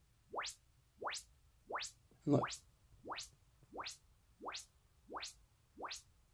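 Short sine-sweep test signal played through a Magnepan 3.7i ribbon tweeter: a quick rising chirp from low to very high pitch, repeated about every 0.7 seconds, nine in a row. It is a frequency-response measurement of the tweeter on its own.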